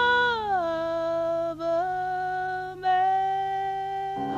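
A female jazz singer holds a long sung note. About half a second in it slides down to a lower pitch, then is held with two brief breaks, and it cuts off at the very end.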